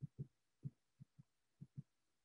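Soft low thumps, seven in under two seconds, mostly in close pairs, over near silence.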